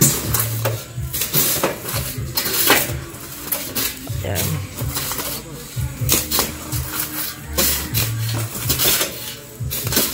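Metal shovels scraping and digging into a load of sand in a truck bed, with sand being thrown and sliding off the side; a run of irregular, repeated scrapes.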